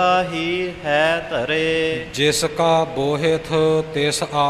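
A male voice sings a line of Sikh Gurbani kirtan in a slow, melismatic chant, the pitch gliding up and down through long phrases. A steady drone sounds underneath and carries on through the pauses in the voice.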